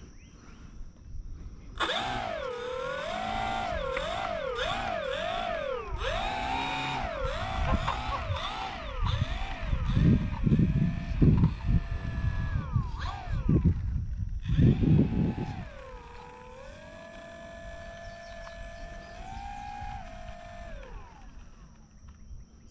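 E-flite Pitts S-1S 850mm RC biplane's electric motor and propeller whining, sweeping up and down in pitch with repeated throttle blips for several seconds, then running steadier before cutting off near the end. Wind rumbles on the microphone in the middle.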